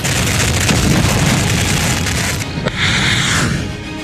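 Missile test-firing blast: a loud, continuous rushing boom, then a sharp crack and a short hissing burst about three seconds in, mixed with background music. The sound fades near the end.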